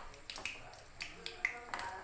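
Hot oil crackling with scattered sharp pops around vettu cake dough balls deep-frying in a kadai, while a slotted metal spoon moves them.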